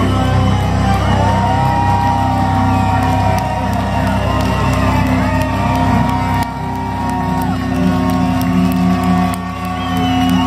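Heavy metal band playing live through a PA, with long held notes over a steady low drone, and a crowd cheering and whooping.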